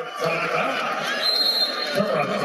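Basketball arena crowd noise carried on a radio game broadcast: a dense hubbub of many voices that swells at the start and holds steady, the crowd reacting to a shot clock violation call. A thin high tone sounds through the second half.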